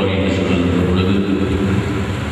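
A man's voice through a public-address system, held on a fairly steady pitch.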